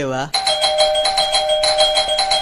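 Electronic doorbell ringing continuously: two steady tones held together with a fast repeating pulse, starting just after a brief voice.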